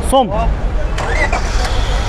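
Steady low rumble of car engines running, with faint background voices and a couple of light clicks.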